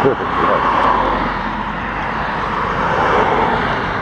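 Cars passing on a road: a steady rush of tyre and engine noise that swells and fades as they go by, loudest about a second in.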